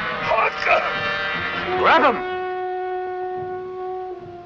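A man moaning and crying out as if in pain, feigning plague sickness. Then a long steady note on a wind instrument from the film's score is held through the last two seconds.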